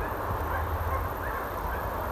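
Wind rumbling on the microphone outdoors, with a couple of faint, short distant calls.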